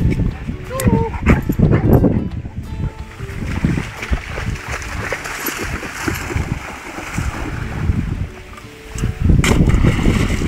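Neapolitan Mastiff barking a few times in play, with wind on the microphone. Near the end a thrown wooden stick splashes into the lake.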